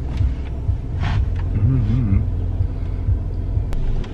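Steady low rumble heard inside a car cabin, with a brief murmured voice partway through and a single sharp click near the end.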